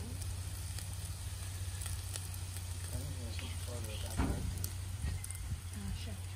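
Cheese-topped tortillas and shredded birria beef sizzling steadily in fat on a flat-top griddle, with light crackling.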